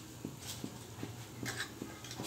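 Bean sprouts cooking in a wok over a gas burner: faint irregular crackling ticks with a couple of brief hisses.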